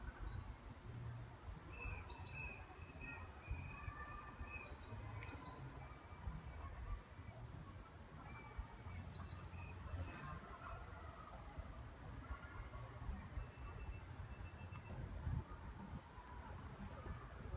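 Faint outdoor quiet with small birds chirping and calling now and then, short high notes and brief glides, over a steady low rumble.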